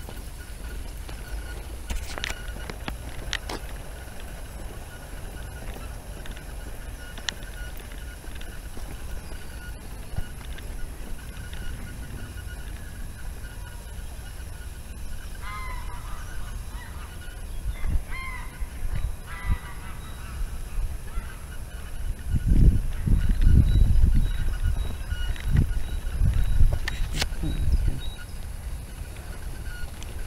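Geese honking in a short series of calls about halfway through. A low rumbling noise in the second half is the loudest sound.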